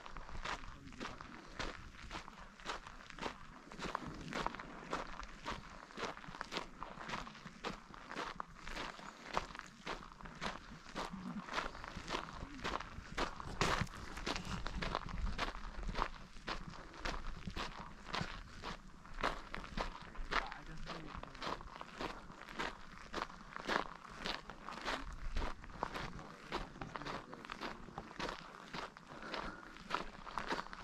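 Footsteps crunching on a dirt and gravel trail at a steady walking pace: the hiker's own steps, picked up close by the camera.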